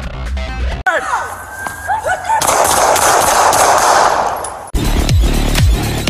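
Edited outro soundtrack. A guitar music bed cuts off about a second in, and sliding whistle-like tones lead into a burst of rapid automatic gunfire lasting about two seconds. Near the end a heavy electronic music track with deep falling bass notes begins.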